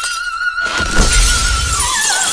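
An operatic soprano holds a high note with vibrato. About half a second in, a loud shattering crash of breaking glass with a deep low boom breaks over it and rings on. Near the end the voice slides down to a lower note.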